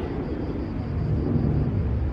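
Low, steady outdoor rumble with no voices.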